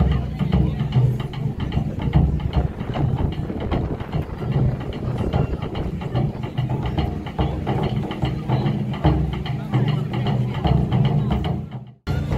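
Taiko drums played live: a troupe beating large barrel drums in a dense, steady run of strokes. The sound cuts off suddenly just before the end.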